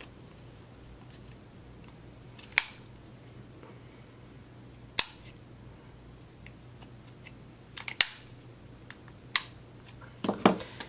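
Handheld corner-rounder punch snapping through a small paper label, four sharp clicks a couple of seconds apart as each corner is rounded, with a few smaller ticks as the paper is repositioned in the punch.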